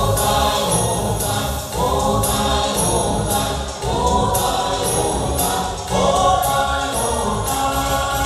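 A group of singers singing a song together over instrumental accompaniment with a steady beat; a new sung phrase begins about every two seconds.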